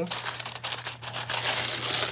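Tissue paper crinkling and rustling as it is pulled open and folded back inside a cardboard gift box.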